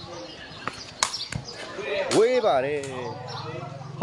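A few sharp knocks about a second in, like a sepak takraw ball being struck or bounced on concrete, then a loud drawn-out shout with a rising-and-falling pitch about two seconds in, over a low steady buzz.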